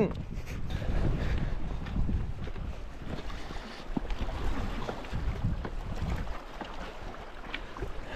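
Wind rumbling on the microphone over the wash of the sea against rocks, with a few faint ticks and knocks. It is loudest in the first couple of seconds, then eases.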